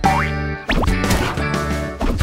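Cartoon soundtrack music with two quick upward-sliding sound effects, one at the start and one a little under a second in.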